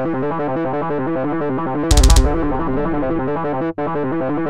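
Playback of a multitrack electronic song: square-wave synth lead voices and a synth bass over a drum track, in a fast run of repeating notes. A louder hit with a deep thud comes about two seconds in, and the sound cuts out for an instant near the end.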